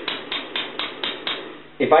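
ASTEC 250 W PC power supply clicking rapidly, about four or five clicks a second, and stopping about one and a half seconds in. It is switching on and off over and over instead of giving a steady output, which the owner suspects means it only puts out pulses of power.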